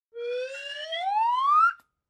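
A single whistle-like tone that climbs steadily in pitch and grows louder for about a second and a half, then cuts off sharply. It is the rising sound effect that opens the channel intro.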